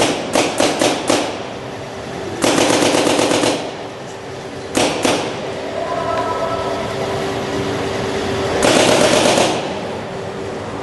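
Paintball markers firing: a run of single shots about five a second at the start, then two rapid-fire bursts of about a second each, several seconds apart, with a lone shot between them.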